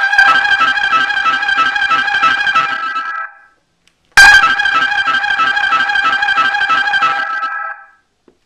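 Boom Blasters 'European Touring Car Sounds' 12-volt musical car horn playing its quick tune of bright, fast-changing notes twice, each run about three and a half seconds long with a second's gap between. It is pretty loud, even with the horn facing down.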